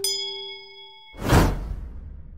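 End-screen sound effects: a click and a bright bell ding that rings for about a second, then a loud whoosh about a second in, trailing off in a low rumble.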